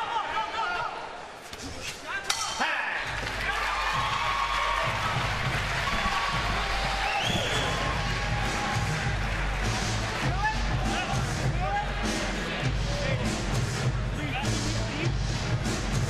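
Arena crowd noise, with a sharp stroke about two seconds in. From about three seconds, arena music with a steady low beat plays under the crowd during the break between rounds.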